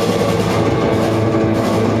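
Live blues-rock band playing loudly and steadily, with electric guitars, bass guitar and drum kit.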